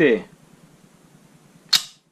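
A Bersa Thunder 9 Pro XT pistol being handled in the hand: one short, sharp click near the end, against quiet room tone.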